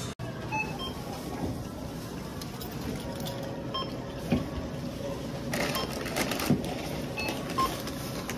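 Supermarket checkout: a barcode scanner gives a few short, high beeps as the cashier scans items, over steady store background noise.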